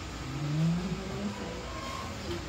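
A motor vehicle engine revving briefly, its pitch rising over about the first second.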